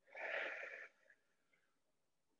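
A woman's single audible breath, just under a second long near the start, one of the deliberate breaths cued while holding a yoga pose (warrior two).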